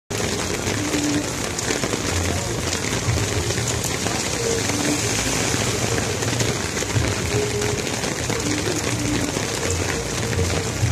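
Hailstorm: hail and rain falling steadily on a road, a dense, even hiss.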